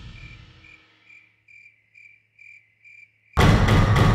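A cricket chirping about twice a second as background music fades away. About three and a half seconds in, loud tense music with heavy strikes starts suddenly.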